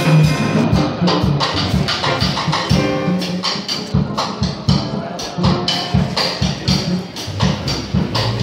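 Jazz rhythm section playing: a plucked upright double bass with a drum kit keeping time, the horns silent.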